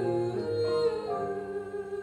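A woman singing long held notes in a slow stage-musical song, with instrumental accompaniment, recorded live from the audience.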